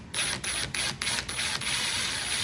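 Cordless drill/driver turning the worm screw of a large hose clamp, tightening the clamp little by little. It makes a steady mechanical whir with regular clicks about four to five times a second.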